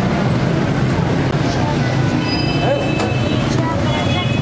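Busy street ambience: a steady low rumble of traffic with indistinct voices in the background.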